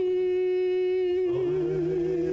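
A woman's voice holding one long wordless sung note at the end of a sung Hebrew prayer. About a second and a quarter in, a man's lower voice joins with a held note beneath it, and her note begins to waver.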